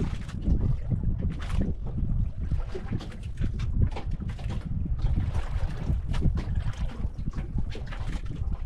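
Wind buffeting the microphone, with water slapping against the wooden hull of an outrigger boat drifting at sea. It is an irregular low rumble with short splashy spikes, and no engine running.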